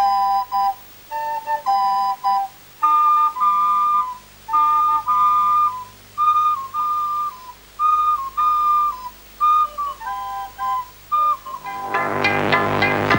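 A small group of children playing recorders together: a simple tune in short phrases of clear, steady held notes, often two parts in harmony. Near the end, other fuller music cuts in.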